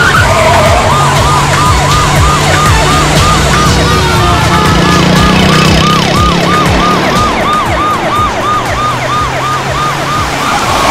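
Police vehicle siren sounding in quick rising-and-falling sweeps, about three a second, over the low drone of vehicle engines.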